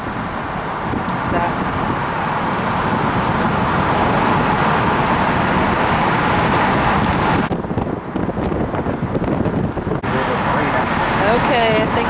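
Wind and road noise in an open-top convertible at highway speed, with wind buffeting the microphone. The rush is steady and loud, turning muffled for a couple of seconds past the middle.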